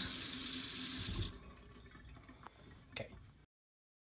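Kitchen tap running into a sink, shut off about a second in. Then a single light knock, and the sound cuts out.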